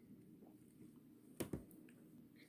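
Near silence: room tone, with two faint clicks close together about one and a half seconds in.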